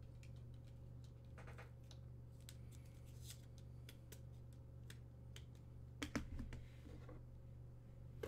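Faint, scattered clicks of typing on a computer keyboard over a steady low hum, with a short louder patch of clicks and rustling about six seconds in.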